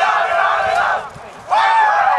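A team of young soccer players shouting together in a celebration huddle: a loud burst of group yelling, a short break about a second in, then another round of overlapping whoops and shouts.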